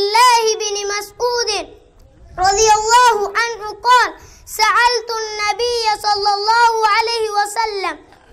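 A young boy's high-pitched voice reciting in Arabic in a drawn-out, sing-song chant, in long phrases with a breath pause about two seconds in.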